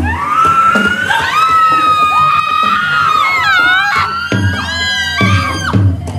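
Several high-pitched voices shriek in long, overlapping cries that rise at the start and are held and wavering, as from participants in trance (kerauhan). The drumming stops under the cries and comes back about four seconds in.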